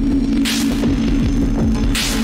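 Slow downtempo electronic blues from an analog Eurorack modular synthesizer: a steady, loud low drone note under short falling low tones, with a hissing noise hit about half a second in.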